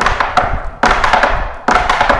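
Metal taps on tap shoes striking a wooden tap board in three quick clusters of taps, less than a second apart. The dancer is stepping and hopping on one foot as a lead-in drill for the pullback step.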